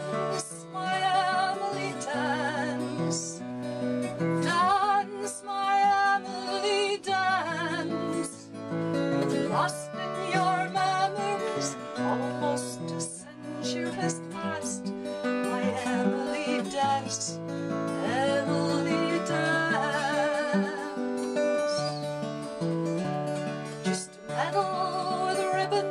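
A woman singing with vibrato, accompanied by an acoustic guitar.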